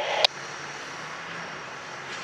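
A two-way radio voice cuts off about a quarter second in, leaving the steady, low running sound of the Brandt hi-rail truck's diesel engine during switching.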